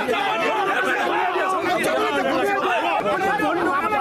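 A crowd of men talking and calling out over one another, a dense tangle of many voices with no single speaker standing out.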